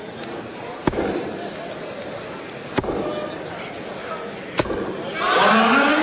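Three steel-tip darts thudding into a bristle dartboard, one throw about every two seconds. After the third dart, crowd noise and voices rise loudly in the hall.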